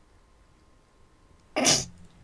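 A woman's single short, loud sneeze about one and a half seconds in, after near silence.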